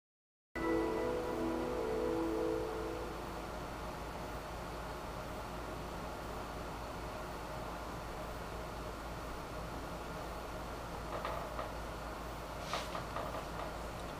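A desktop computer's steady low hum. It opens with a short chord of held tones lasting about two seconds, like a Windows startup chime, and a few faint clicks come near the end.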